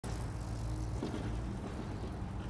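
Steady low rumble of outdoor background noise, like distant traffic, with no distinct events.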